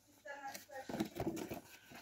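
Cardboard packaging handled as an enamel mug is slid out of its box, in a few rough scraping strokes, with faint murmured speech.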